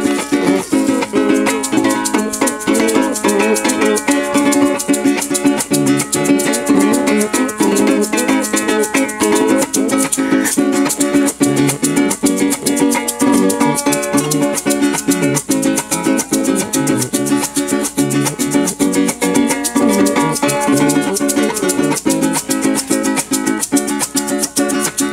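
Llanero cuatro strummed in a steady fast rhythm with maracas shaken along: an instrumental interlude of a llanera song, with no singing.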